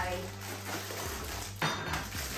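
Dishes and utensils being handled on a kitchen countertop, with one sharp knock a little past halfway.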